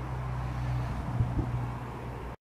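Steady low rumble and hiss of outdoor background noise on the camera microphone, with two faint knocks about a second and a half in.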